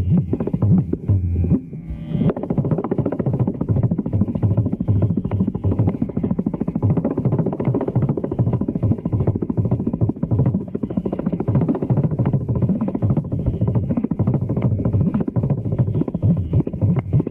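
Mridangam and kanjira playing a thani avarthanam, the percussion solo of Carnatic music: fast, dense strokes with deep bass tones, with a short drop in the playing about two seconds in.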